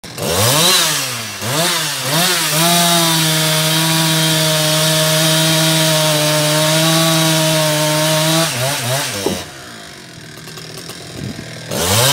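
Stock Husqvarna 365 two-stroke chainsaw revved up and down several times, then held at a steady high pitch under load for about six seconds while cutting through a log. About nine and a half seconds in it drops back to a quieter idle, and it revs up again near the end.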